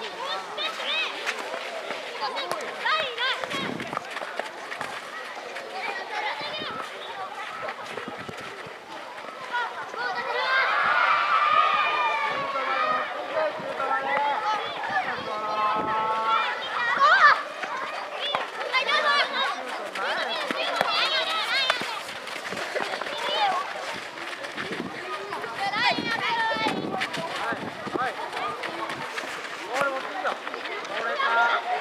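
Voices of players and spectators shouting and calling out across an open football pitch during a youth match, with many voices overlapping. The calling grows louder and busier about ten seconds in.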